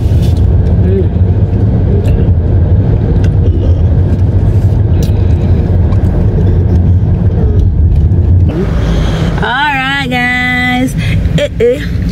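Road and engine noise inside a moving car's cabin: a steady low rumble that drops away about eight and a half seconds in as the car slows. Then a voice briefly sings a wavering note.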